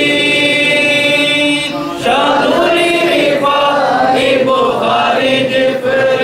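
Male voices chanting an Arabic devotional litany together. The first note is held for nearly two seconds, then after a short break the chant resumes with a rising and falling melody.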